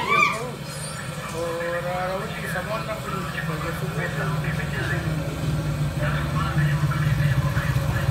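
A small vehicle engine running with a low, steady rumble. It sets in about three seconds in and grows louder toward the end, under voices.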